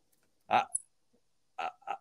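Brief laughter from a man in three short bursts: one about half a second in and two near the end, with silence between them.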